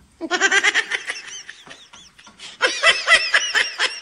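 High-pitched laughter, likely an added laugh sound effect, in two bursts: one near the start lasting about a second, and a louder one over the last second and a half.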